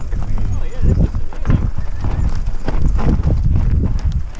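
Mountain bike descending a loose, rocky trail: tyres crunching and bumping over stones and the bike rattling in quick, uneven knocks, with wind rumbling on the helmet-mounted microphone.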